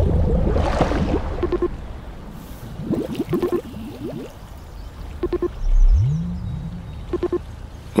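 Water bubbling and gurgling as a weed-draped submarine periscope breaks the surface, with short pings about every two seconds and a low whine rising in pitch about six seconds in.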